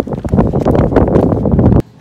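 Wind buffeting the camera's microphone, a loud, rough rumble that cuts off suddenly near the end.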